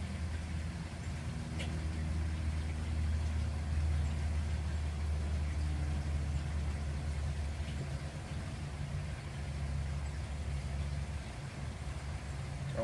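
A steady low mechanical hum, like a motor running at a constant speed, with a few faint ticks over it.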